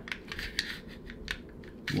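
SIG Sauer P365 pistol being put back together: a few light, separate clicks and scrapes as the slide is lined up on the frame rails.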